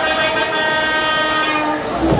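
A long, steady horn-like tone played through the fairground ride's sound system while the bass beat drops out. The beat comes back in right at the end.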